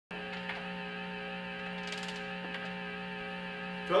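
Steady hum from a Roland Juno synthesizer: one low tone with many overtones, held without change, with a few faint clicks.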